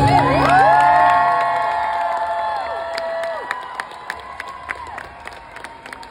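Concert audience cheering and whooping as an acoustic song ends, with many voices holding and sliding long calls. The cheering fades after about three seconds into scattered clapping.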